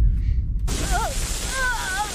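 Dramatic sound effects: a deep boom, then a loud static-like hiss that comes in about half a second in, with a wavering, wailing cry over it twice.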